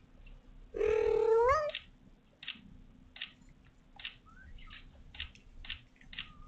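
Newborn kitten giving one loud, drawn-out mewing cry about a second in, rising in pitch at the end, followed by a run of short, high squeaks roughly every half second.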